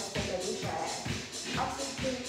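Upbeat dance music with a steady beat, a little over two beats a second.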